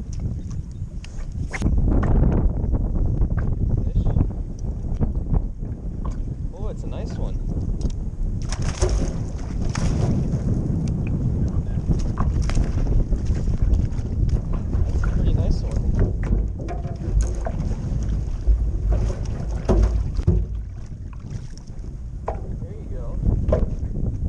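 Wind on the camera microphone as a steady low rumble, over choppy waves splashing against the hull of a small boat, with scattered knocks.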